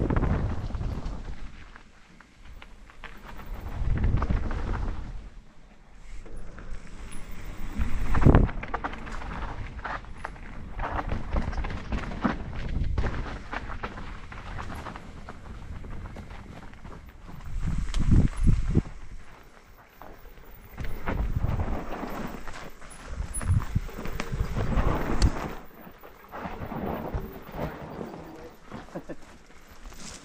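Mountain bike riding down a dirt trail: tyres rolling over dirt and rock, with knocks and rattles over bumps and wind rushing over the camera's microphone in repeated surges.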